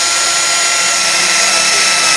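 Brushless cordless angle grinder running with no load at a set speed: a steady, high-pitched motor whine.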